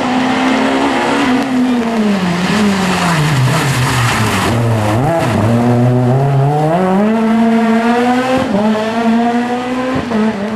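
Rally car engine at high revs: its pitch drops over the first few seconds as the car slows and gears down for a hairpin, dips sharply about five seconds in, then climbs again about six seconds in and stays high as it accelerates out of the bend.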